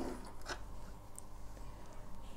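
Quiet handling of a stopped sewing machine: a short click about half a second in, then faint rustling as the stitched cotton sample is drawn out from under the presser foot.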